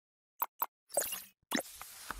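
Cartoon-style sound effects for an animated logo intro: two quick plops close together, then two fuller plops with short tails, about a second in and at a second and a half.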